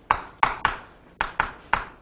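Chalk striking a chalkboard while words are written: about six sharp, irregular taps, each trailing off quickly.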